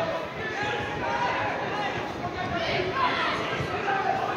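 Football crowd in a stand: several nearby spectators talking over one another, a steady murmur of voices with no cheering.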